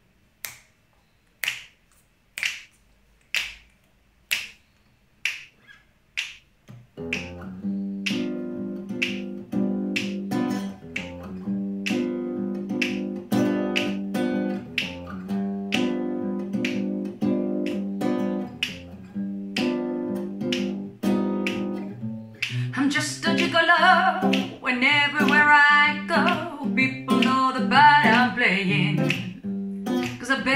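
Finger snaps keep a steady beat, about one a second. About seven seconds in, an acoustic guitar joins in, strumming chords under the snaps. Near the end a woman starts singing.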